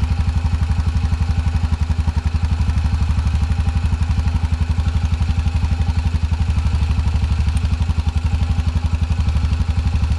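Engine idling steadily, a rapid, even low pulse that does not change.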